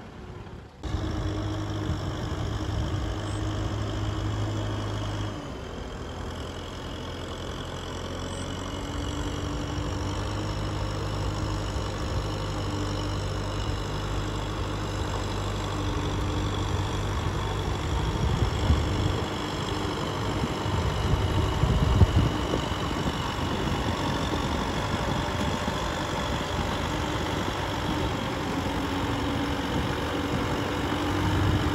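Kubota M6040SU tractor's four-cylinder diesel engine running steadily under load while it pulls a disc harrow through a wet paddy field. The sound gets rougher and louder about two-thirds through, with two sharp knocks.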